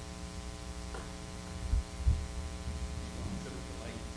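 Steady electrical mains hum in the sound system, a buzz with many even overtones, with a short low thump a little before the middle.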